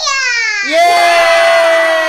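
Excited voices cheering together, a small child's among them: a high yell that slides down in pitch, then one long held shout.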